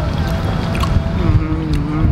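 Steady low outdoor rumble, with a long steady hum starting about a second in and a few light clicks of plastic forks against bowls.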